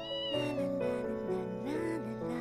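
A cat gives one short, high meow at the start, over background music with sustained notes.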